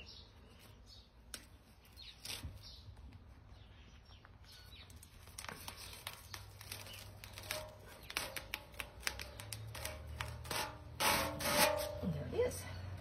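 A plastic adhesive mesh stencil being peeled off a painted metal milk can: a run of small crackling ticks, sparse at first, thicker from about halfway, and loudest just before the end.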